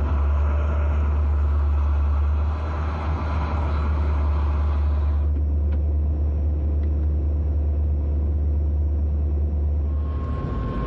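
Steady low hum and rumble of a train locomotive heard from its driving cab, with a rushing noise above it that drops away about halfway through.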